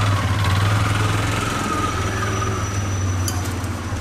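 An engine idling: a steady low rumble.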